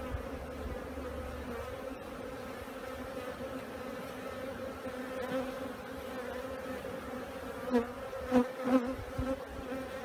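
Honeybees humming over an open hive, a steady even drone, with a few louder buzzes near the end.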